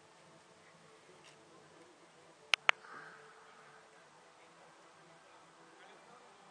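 Insects buzzing faintly, with two sharp clicks in quick succession about two and a half seconds in.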